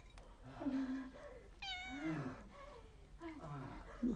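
A domestic cat meows once, a short high call a little before the middle, among low vocal sounds.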